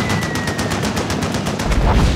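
Rapid automatic gunfire, an even stream of about ten shots a second, with a heavier low thud just before the end.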